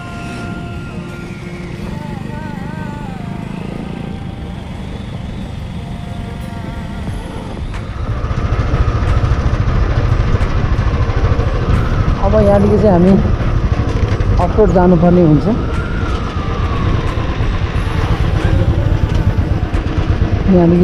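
Motorcycle running along a road with steady engine and road-wind rumble, which gets clearly louder about eight seconds in. A voice calls out briefly twice near the middle.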